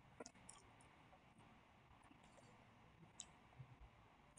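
Faint computer mouse clicks over near silence: a few quick clicks just after the start and another about three seconds in.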